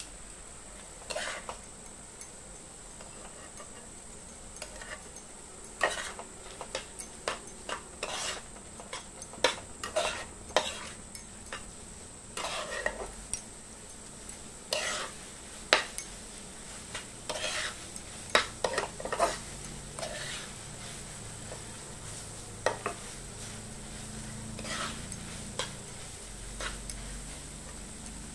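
Steel spoon scraping and clinking against a nonstick kadai as boiled Maggi noodles are stirred and tossed into the masala, in irregular strokes with pauses between, few in the first seconds and many through the middle.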